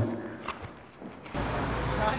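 Steady outdoor city street noise with a low traffic rumble, cutting in suddenly about one and a half seconds in after a brief quiet indoor stretch with a single click.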